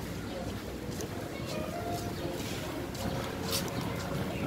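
Open-air street ambience on a pedestrian path: faint voices of passers-by over a steady low rumble.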